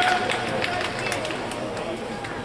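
Indoor badminton hall crowd between rallies: scattered applause for the point just won dies away, leaving a murmur of voices and chatter.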